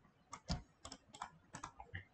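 Faint keystrokes on a computer keyboard: a quick, irregular run of six or seven light taps.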